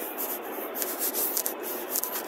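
Scratchy rubbing and rustling on a handheld phone's microphone as it is carried along, with irregular hissing flurries and no clear tone.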